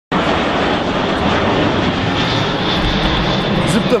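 Twin-engine jet airliner flying overhead: a loud, steady rush of jet engine noise. A thin high whine joins about halfway through.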